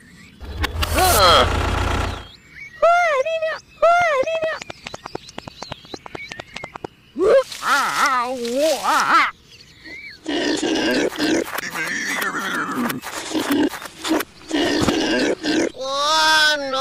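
Dubbed-in cartoon sound effects. A loud noisy burst comes about half a second in, followed by short, high, squeaky gibberish voice calls and then a stretch of animal grunts and squeals.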